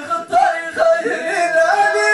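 Men singing a Middle Atlas Amazigh inchaden chant into microphones, with long held notes that bend and waver in pitch.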